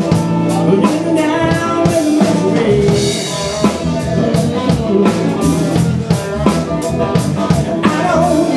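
A live rock band playing, with a steady drum-kit beat, electric guitar and a singer at the microphone.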